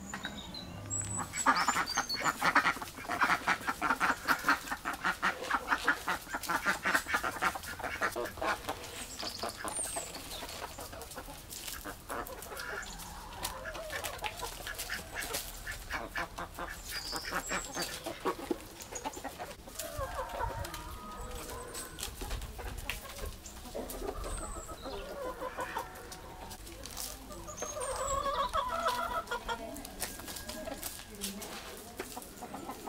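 Domestic ducks calling while being fed grain: a dense run of rapid calls for the first several seconds, then scattered separate quacks.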